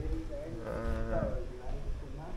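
A single bleat from a goat or sheep, one drawn-out call lasting under a second, starting about half a second in.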